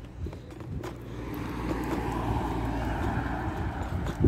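A car going by on the road: engine and tyre noise that swells from about a second in and holds steady.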